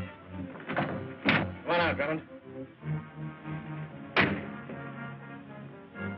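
Orchestral film score with several sharp thuds over it; the loudest thud comes a little after four seconds in.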